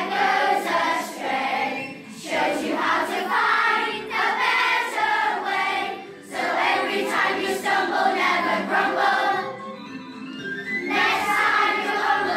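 A children's choir singing together, phrase by phrase with short breaks between phrases. Shortly before the end the singing thins and quietens for about a second, then comes back full.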